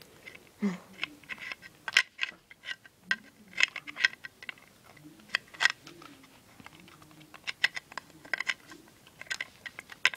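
Irregular clicks and crinkling of fingers tugging and picking at a small plastic toy figure close to the microphone.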